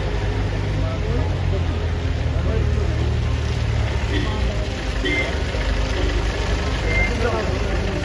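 Vehicle engines running at low speed, an off-road jeep pulling slowly through the mud close by, over the talk of a crowd. The engine rumble is heaviest in the first half.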